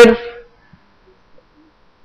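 A man's voice trails off in the first half second, then near silence: room tone.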